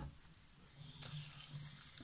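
Mostly quiet for the first second; then a kitchen tap is turned on and water begins to run faintly into a stainless steel sink onto blueberries held in a plastic punnet.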